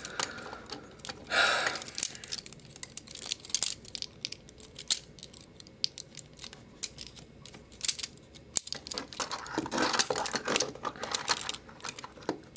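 Plastic joints and parts of a Transformers Voyager-class The Fallen action figure clicking and rattling as it is handled and transformed, irregular sharp clicks throughout, with bursts of denser scraping a little after the start and again near the end.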